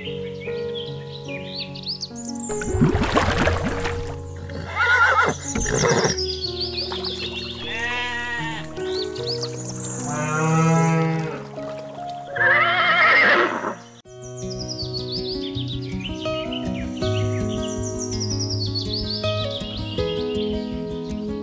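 Background music with a handful of farm animal calls laid over it one after another, about five in all, in the first two thirds; the rest is music alone.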